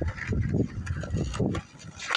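Skateboard rolling on concrete, its wheels giving a few light clicks, under heavy wind rumble on the microphone that drops off near the end.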